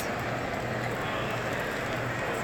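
Steady background noise of a large exhibition hall, a low even wash of distant activity with a constant low hum running under it.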